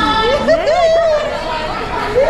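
People chattering, with high-pitched voices overlapping.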